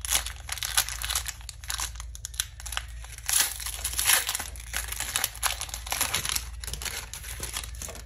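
A foil Pokémon booster pack wrapper being torn open and crinkled by hand: a dense, irregular run of sharp crackles.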